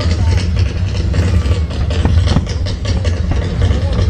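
Fireworks display: a quick run of bangs and crackles from bursting aerial shells and ground fountains, over a continuous low rumble.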